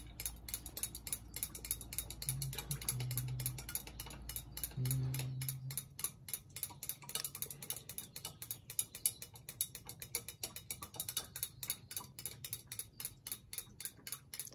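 Rapid, regular mechanical ticking, with a low hum that cuts off about five seconds in.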